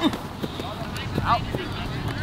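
Open-air field ambience with scattered voices calling out, one rising shout about a second in, over a steady background hubbub. A single sharp smack right at the start.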